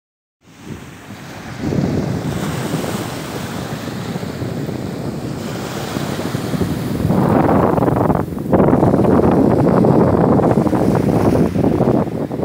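Wind buffeting the microphone over small waves washing onto a pebble beach. The noise grows louder about seven seconds in, with a brief drop just after eight seconds.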